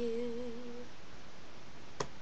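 A young woman's voice holding one slightly wavering hummed note, unaccompanied, for just under a second; it then stops and only faint room hiss remains.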